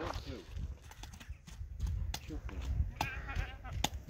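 A farm animal's short, high, wavering call about three seconds in, over a low rumble and a few faint clicks.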